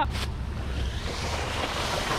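Water rushing and spraying off a wakeboard as it is towed across shallow water, the hiss growing stronger about a second in, with wind buffeting the microphone.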